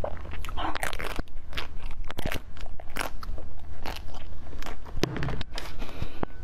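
Frozen basil-seed ice being bitten and chewed close to the microphone: a run of sharp, irregular crunches and cracks as the ice breaks between the teeth.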